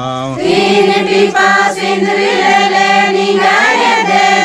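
A group of worshippers chanting a devotional prayer line together in unison, taking up the line just after a lone male voice, as the response in a call-and-response chant.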